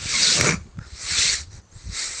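Two harsh, hissy breaths close to the microphone, one at the start and one about a second in, in a pause between the narrator's sentences.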